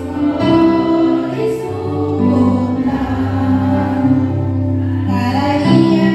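A hymn sung by a group of voices, with a female voice on the microphone, to electronic keyboard accompaniment, played over a PA system.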